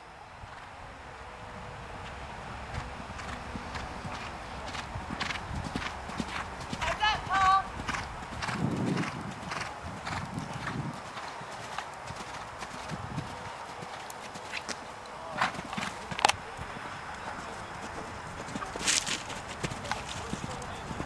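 A horse cantering, its hoofbeats thudding in an uneven run, with a few heavier low thuds about nine to eleven seconds in.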